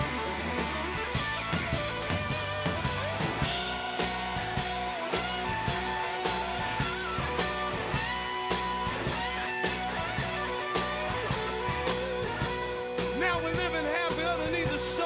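Live rock band playing: electric guitars with sustained, bending notes over a steady drum-kit beat of about two strokes a second.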